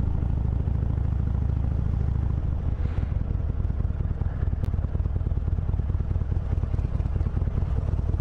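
Harley-Davidson Sportster Iron 883's air-cooled V-twin running at low speed as the bike rolls along, a steady low rumble of firing pulses that turns a little choppier about two and a half seconds in.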